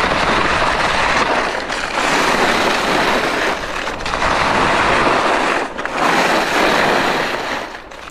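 Head WorldCup Rebels i.Speed alpine skis carving turns down a firm snow piste, their edges scraping the snow in a loud, continuous rush. The noise swells through each turn and dips briefly between turns, about every one and a half to two seconds.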